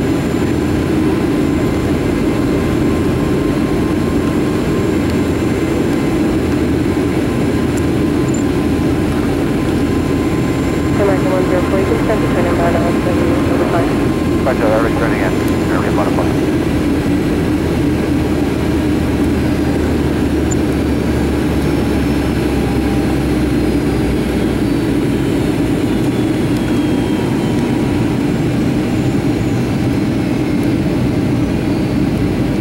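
Steady cabin noise of a Boeing 757-300 airliner on final approach, heard inside the cabin over the wing: jet engine hum and airflow.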